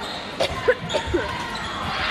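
A volleyball rally on a hardwood gym floor: the ball is struck about four times in quick succession within a second, mixed with short sneaker squeaks, over steady crowd chatter.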